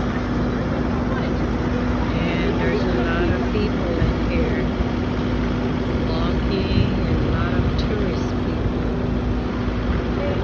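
Busy city street ambience: a steady low hum and traffic noise with the scattered chatter of passers-by.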